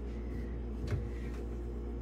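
Steady low hum in a kitchen, with a few light clicks as a wooden cabinet door is opened, the clearest about a second in.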